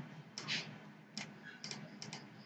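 A handful of sharp, irregular clicks from a computer mouse and keyboard, over a faint steady low hum.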